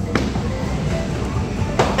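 A bowling ball knocks onto a wooden mini-bowling lane just after the start and rolls down it, with background music playing.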